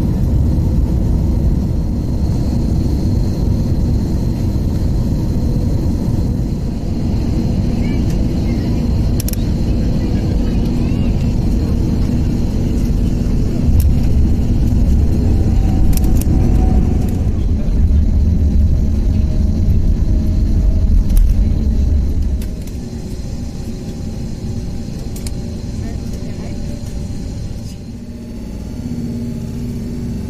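Jet airliner cabin noise through landing: a steady low rumble of engines and airflow that gets louder about fourteen seconds in as the wheels meet the runway. It is loudest for a few seconds after that, as on a reverse-thrust landing rollout, then drops away in two steps as the plane slows.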